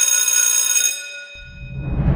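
Electric school bell ringing steadily, stopping about a second in and dying away. Drum-heavy music then comes in near the end.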